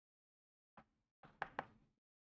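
Chalk striking and writing on a blackboard: a faint single click about a second in, then a short run of chalk strokes with two sharp taps near the end.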